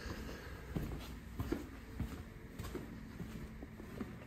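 Faint footsteps on a concrete shop floor, a soft step about every half second, over a low steady hum.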